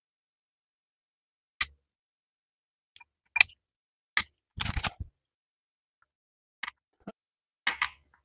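A handful of short, separate clicks and rattles, with silent gaps between them, from spark plug wire boots being handled and pushed onto the terminals of a red MSD distributor cap. There is a small flurry of clicks about halfway through.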